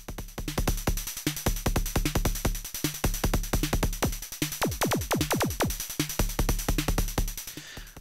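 Make Noise 0-Coast patched as a kick drum: on each gate its Slope envelope sweeps the oscillator's pitch down, giving a short pitch-dropping kick that doubles as a bassline, in a rhythmic pattern with a snare and a noisy, pitch-modulated hi-hat from other modules. Around the middle the kick's downward sweeps grow longer as a knob is turned; the kick still sounds thin. The pattern stops near the end.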